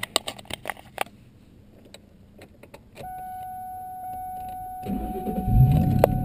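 A few clicks and key rattles. About three seconds in, a steady high tone comes on. Near five seconds the Ford Mustang GT's 4.6-litre V8 cranks and fires right up, rising to a fast idle.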